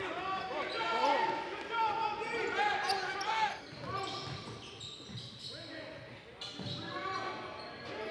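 Basketball shoes squeaking sharply on a hardwood court during play, with a ball bouncing, in an echoing gym. The squeaks come thick in the first half, thin out in the middle, and pick up again near the end.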